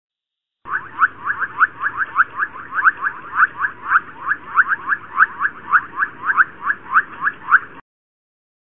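A rapid series of short, high chirping calls, about three or four a second, that starts abruptly just under a second in and cuts off just before the end.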